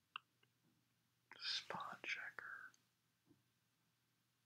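A single computer mouse click, then about a second and a half of whispered muttering under the breath, ending with a faint tick.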